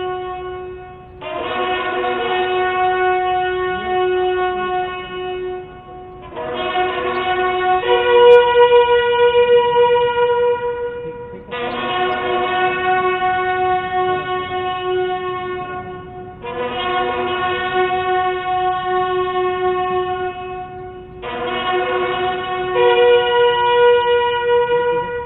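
Several ceremonial buglers sounding a bugle call in salute to the fallen: long held notes of about five seconds each, with short breaks between notes and a step in pitch within some of them.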